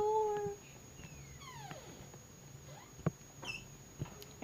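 A girl's voice holding one short, steady note at the start, not words, followed by a single sharp click about three seconds in.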